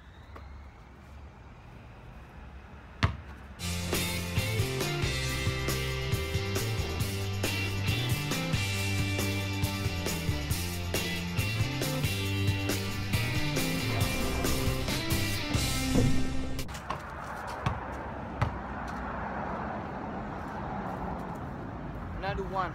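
Background music with a steady beat and a stepping bass line comes in about three and a half seconds in and stops suddenly around sixteen and a half seconds. Before it there is a quiet stretch with one sharp click; after it comes a steady rushing noise.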